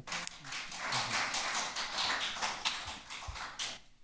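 Audience applauding: a dense, irregular patter of many hands clapping that thins a little and then cuts off sharply just before the end.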